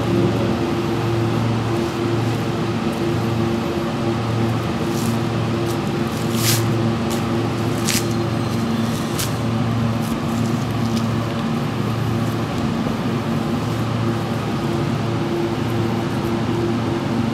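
A steady machine hum that swells and fades every couple of seconds, with four short, high scrapes of a boning knife cutting through beef between about five and nine seconds in.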